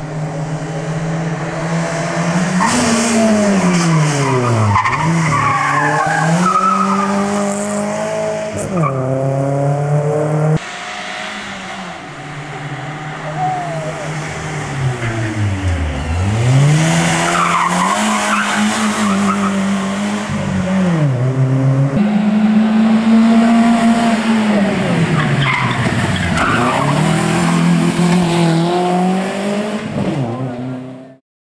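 Hill-climb racing saloons, Dacia Logans among them, driven hard: engines revving up through the gears and dropping sharply under braking, then pulling away again, with tyre squeal in the corners. Three separate runs follow one another, each cut in abruptly.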